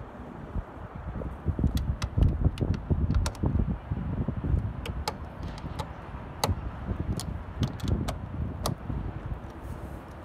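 Socket ratchet on an extension clicking in short, irregular strokes as it snugs a door mirror's mounting bolts, with dull handling knocks against the car door.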